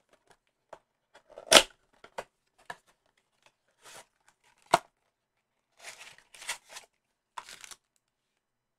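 Cardboard blaster box of trading cards being opened by hand. There is a loud tear of the cardboard about a second and a half in and a sharp click near the five-second mark, then scattered rustles as the foil packs inside are handled.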